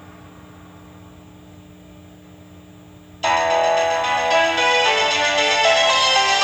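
A faint steady hum, then about three seconds in music starts abruptly and loud from the tape through the TV's speaker: the music of a home video company's logo at the start of a VHS tape, with bright bell-like notes.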